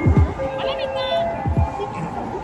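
Japanese train-station platform departure melody: a short chiming tune of held notes over crowd noise and a voice, with two low thumps about a second and a half apart.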